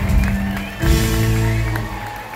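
Live country band playing loud through the PA, held bass-heavy chords with light drum strokes, the chord changing about a second in; heard from within the audience.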